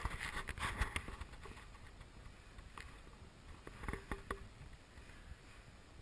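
Cable-pulley exercise machine being worked: the cable and pulley give a cluster of sharp clicks and knocks in the first second, then a few more knocks about four seconds in.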